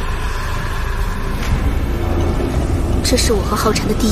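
A low, steady background rumble, then a young woman begins speaking about three seconds in.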